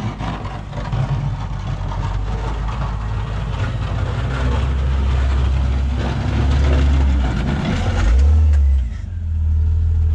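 Jeep Cherokee XJ with a snowplow pushing snow up a driveway in four-wheel drive, its engine working under load. The engine grows louder through the second half as the Jeep comes closer, eases off for a moment near the end, then picks up again.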